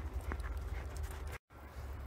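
Belgian Malinois running over snow, its paws padding softly, over a steady low rumble. The sound drops out completely for a moment about one and a half seconds in.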